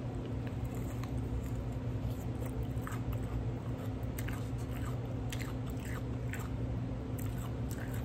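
A person biting into and chewing a grilled jalapeño pepper: soft, scattered wet clicks of chewing over a steady low hum.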